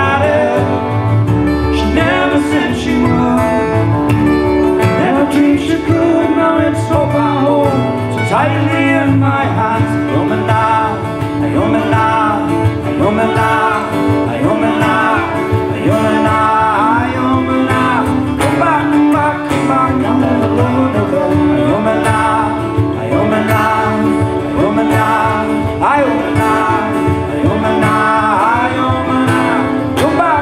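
Live folk band playing a tune on fiddle, button accordion, acoustic guitars and drum kit.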